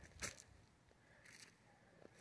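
Near silence, with two faint brief scuffs, one about a quarter second in and another past the middle.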